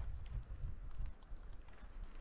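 Snowboard binding strap being worked by hand: a few faint clicks over a low rumble.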